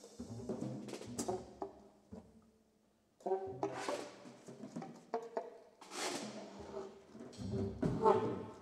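Sparse free-improvised jazz from a saxophone, double bass and drum kit trio: scattered drum and cymbal strikes and short saxophone tones, broken by a near-silent pause of about a second around two to three seconds in, after which held saxophone notes return over further strikes.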